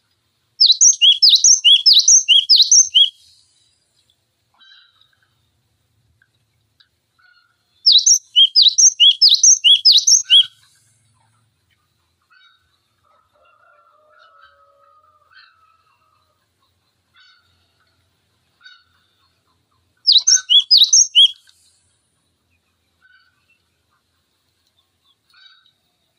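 Cinereous tit (gelatik batu) singing: three loud bursts of rapidly repeated two-note phrases, the notes alternating high and lower, each burst lasting two to three seconds. Faint scattered chips come between the bursts.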